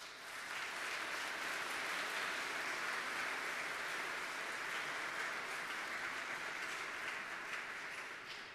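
Audience applauding, swelling up within the first second, holding steady, and starting to fade near the end.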